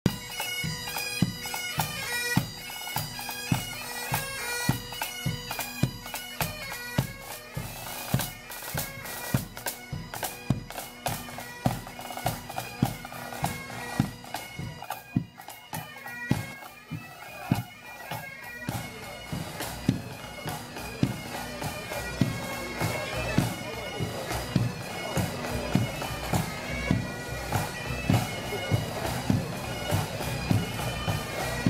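Marching pipe band: bagpipes playing a tune over their steady drones, with drums beating a regular marching time. The pipes' melody is clearest in the first few seconds, and the drum beat carries on throughout.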